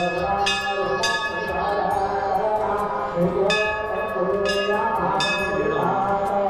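Brass Hindu temple bell rung by hand, several strikes with long ringing tails: a quick run of three near the start and three more in the second half, over voices.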